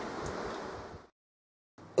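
Small DC fan running steadily as load on a buck-boost converter set to about 12 volts, an even whooshing hiss that cuts off abruptly about a second in, leaving dead silence.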